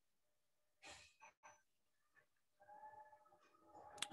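Near silence: room tone, with a faint breath or sigh about a second in.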